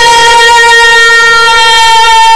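A woman's voice singing one long, steady held note of a Turkish folk song, loud through a microphone and sound system.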